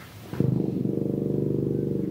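Tuba sounding a single very low note, held steady with a fast, rattling pulse: a demonstration of the extreme bottom (pedal) register. It starts about half a second in.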